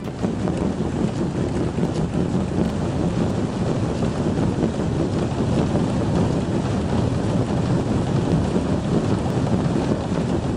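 Cotton balls driven by 138 small DC motors knocking against the insides of cardboard boxes, so many at once that the knocks merge into one dense, steady mass of sound, mostly low in pitch.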